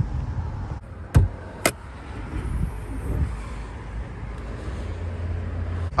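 Two sharp clicks about half a second apart as the hood latch of a Jeep Grand Cherokee L is released and the hood is raised, over a low steady rumble.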